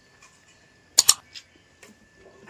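Computer mouse-click sound effect from an animated subscribe-button overlay: a sharp double click about a second in, followed by a couple of fainter clicks, over a faint steady high whine.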